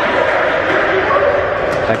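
Basketball game noise echoing in a gymnasium: players' voices and shouts from the court, with a short high squeak about a second in.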